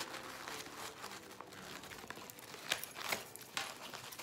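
Fabric ribbon rustling and crinkling as hands gather and twist it into a bow, with a few sharper crackles in the second half.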